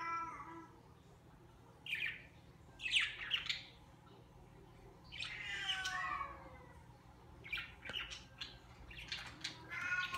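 Short chirping calls about two and three seconds in, a longer call falling in pitch around five to six seconds, and a run of quick chirps near the end.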